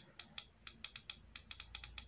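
Small tactile push button on a homemade dot-matrix clock clicking about a dozen times in quick succession as it is pressed repeatedly, stepping the display brightness up.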